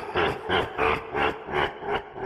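Horror sound effect: a deep, growling, voice-like sound pulsing about three times a second, weakening near the end.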